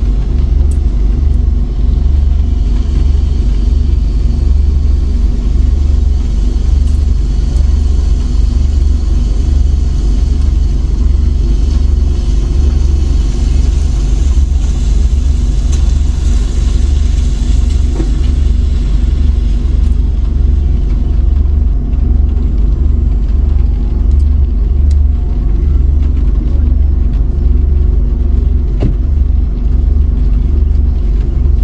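Car engine idling steadily, heard from inside the parked car's cabin as a loud low rumble, with a steady hiss above it that thins out about two-thirds of the way through.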